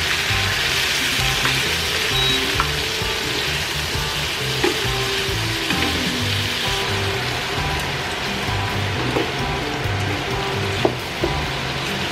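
Peeled shrimp frying in butter and garlic in a nonstick pan: a steady sizzle as they are turned and tossed with tongs, with a few light clicks of the tongs against the pan.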